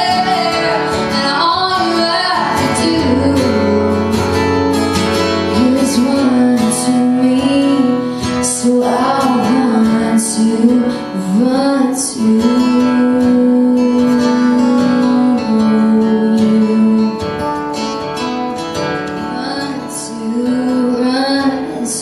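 A woman singing live with long held notes, accompanied by two acoustic guitars.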